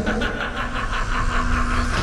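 Sci-fi electric hum of an energy restraint field: a steady low buzz under an evenly pulsing electrical crackle, about seven pulses a second.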